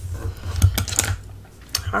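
Paper being folded and pressed flat by hand on a cutting mat: low dull thuds of hands pressing on the table, with a few short rustles and taps.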